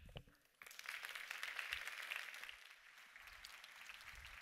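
Audience applauding, starting about half a second in and fading over the last couple of seconds.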